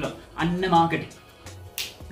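A single sharp finger snap near the end, after a few words of a man's speech.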